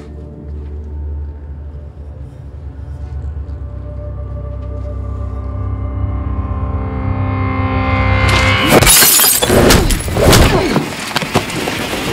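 A low synth drone swells steadily louder for about eight seconds. It breaks off in a sudden loud crash with shattering glass, followed by a rapid run of hits and crashes from a fight.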